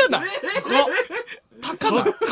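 Men laughing in short, repeated chuckles, breaking off briefly about a second and a half in and then starting again.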